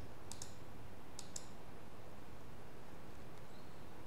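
Computer mouse clicking: a quick pair of clicks near the start and another pair about a second later, selecting an option from a drop-down menu, over a faint steady hiss.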